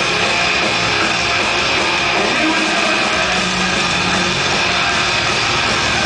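A live rock band playing loud and steady: distorted electric guitars, bass guitar and drums, heard from the crowd.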